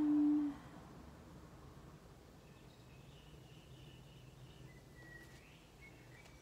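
A short, low, steady hummed 'mm' from a person, about half a second long at the very start, followed by faint low background noise.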